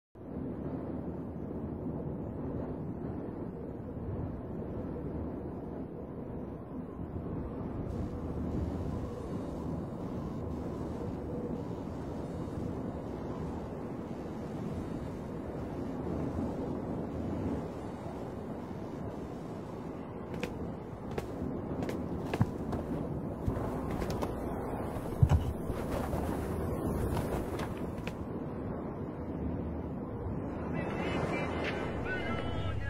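Steady low rumbling noise with no clear tone, with a few sharp clicks in the last ten seconds and one louder knock about 25 seconds in.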